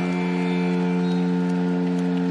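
Arena end-of-period horn sounding one long, steady low blast over crowd noise, signalling the end of the first half.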